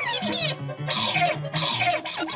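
Cartoon score with a plucked bass line of short notes, under several short, rough non-word vocal bursts from a cartoon character.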